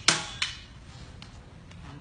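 Two sharp clacks of eskrima sticks striking each other, a loud one at the start and a lighter one just under half a second later, then a few faint ticks.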